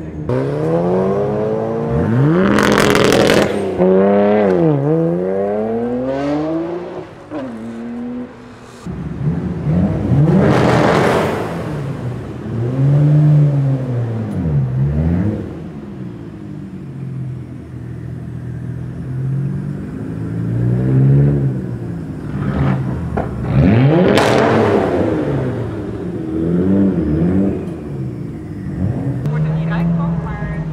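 Nissan Skyline R33 GTR's twin-turbo RB26DETT straight-six accelerating hard several times, the engine pitch climbing steeply and then dropping off. The first run echoes off the walls of a concrete tunnel.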